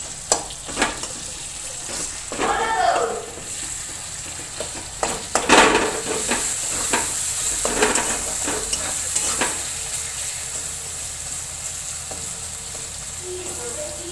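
Chopped tomato, garlic and onion sizzling in hot oil in a metal kadai, stirred with a metal spatula that scrapes and clicks against the pan again and again; the loudest scrape comes a little past five seconds in.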